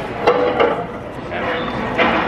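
A bite taken into a slice of cheese pizza, with a few short crunches of the crust and chewing, over people's voices in the background.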